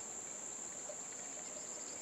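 Steady, unbroken high-pitched drone of insects in the vegetation around a reservoir, over faint outdoor ambience.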